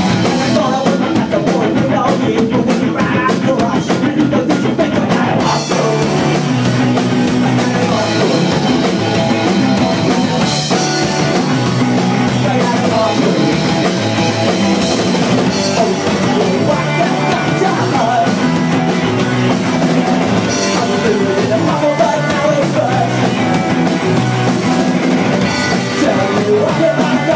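Live punk rock band playing loud and fast, with distorted electric guitar, bass and a drum kit with cymbals, recorded on a phone microphone. The sound turns brighter and fuller about five seconds in.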